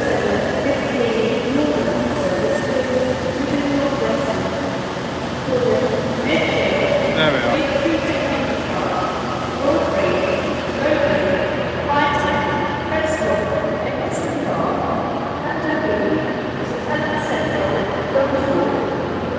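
Diesel multiple unit running at a station platform, its engine and machinery giving a steady drone with shifting pitched tones under the echo of the train shed.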